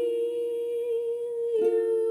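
A voice humming one long held note over strummed ukulele chords, with a fresh strum about one and a half seconds in.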